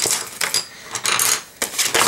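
Handling noise of small hard objects: pencils clicking and clattering against each other, with packaging rustling, as they are pulled out. The sound comes in a few short clusters of clicks and rustle.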